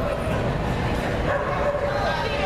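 A dog barking over background voices.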